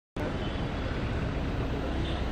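Steady outdoor street noise, a hum of passing traffic, starting abruptly just after the opening.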